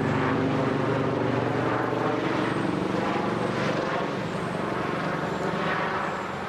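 Aircraft engine running with a steady drone, starting suddenly and holding an even pitch throughout.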